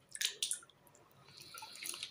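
A hand swishing green olives around in a plastic bucket of water, making splashing and dripping sounds. A few sharp splashes come in the first half second, then a steadier swishing near the end.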